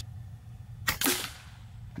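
A single shot from an FX Impact M4 .22 PCP air rifle about a second in: a short, sharp crack with a brief ring after it. It is a test shot on the 25.39 gr pellet tune, with the micro wheel at 3.5.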